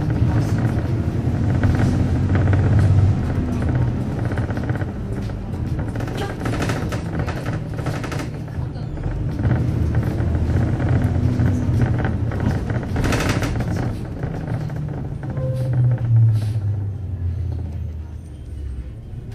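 City bus under way, heard from inside the cabin: a steady low rumble of engine and road, with a few brief rattles or knocks. Music plays over it.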